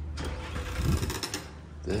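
A glass shop entrance door being pulled open and walked through, over a steady low rumble.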